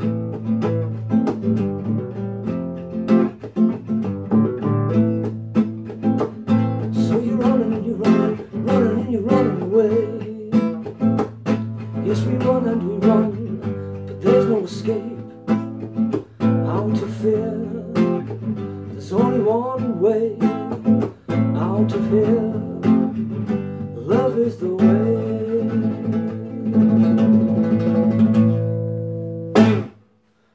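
Classical guitar strummed in steady, rhythmic chords, with a man's wordless singing wavering over it in stretches. The playing stops suddenly at the very end.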